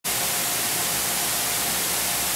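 Air-track blower running: a steady, even rush of air.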